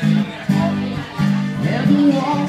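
Acoustic guitar strummed, a new chord struck at the start, about half a second in and again just past a second in.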